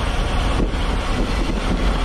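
Steady wind rushing over the microphone of a camera on a road bike moving at about 24 mph, with tyres hissing on wet asphalt.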